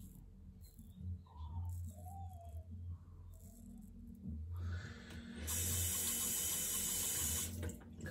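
Bathroom sink tap running: a steady rush of water that builds about four and a half seconds in, runs for about two seconds and stops just before the end. Before it, only faint low handling sounds.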